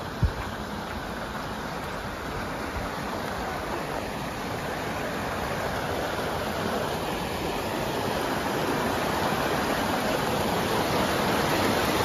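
A rocky mountain stream rushing over boulders in small cascades, a steady wash of water that grows gradually louder. There is a single brief knock just after the start.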